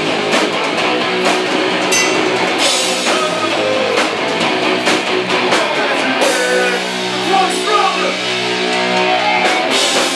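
Live hardcore punk band playing distorted electric guitars and a drum kit. From about six seconds in, the guitars hold sustained chords over the drums.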